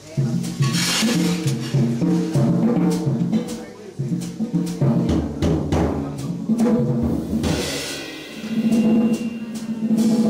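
Live jazz quartet playing: alto saxophone, piano, double bass and drum kit, with cymbal crashes about a second in and again later on.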